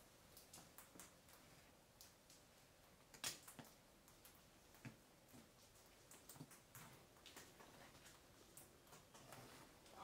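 Near silence with faint scattered clicks and rustles as a hand prods a rolled-up, wrapped bundle on a concrete floor. One louder brief rustle or knock comes about three seconds in.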